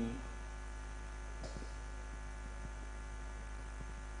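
Steady electrical mains hum from the PA sound system, with a few faint soft ticks over it.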